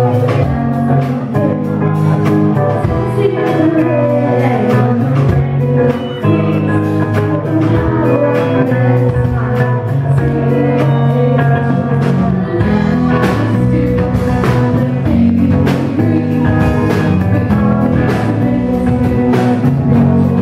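Live rock band playing: a female lead vocalist sings over electric guitars and a drum kit.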